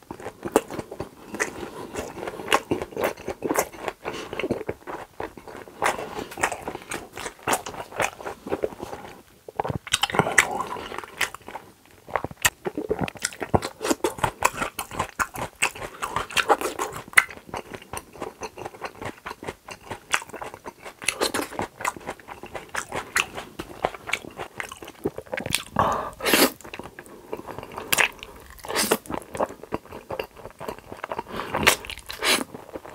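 Close-miked chewing of a mouthful of steak: a steady run of wet mouth noises with many sharp, irregular clicks.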